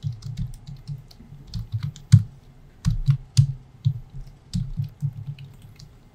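Typing on a computer keyboard: an irregular run of keystrokes, with one louder keystroke about two seconds in.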